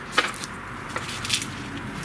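Handling noise of plastic dust-boot parts being picked up and moved: a few light clicks and knocks over a faint rustle.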